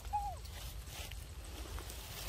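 A baby monkey gives one short, squeaky call that falls in pitch, just after the start, over a steady low rumble.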